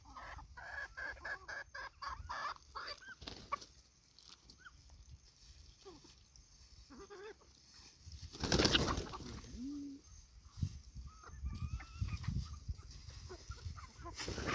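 A flock of chickens, gamefowl hens and roosters, clucking softly with short scattered calls while they feed. There are many light ticks in the first few seconds, and one louder noisy burst a little past halfway through.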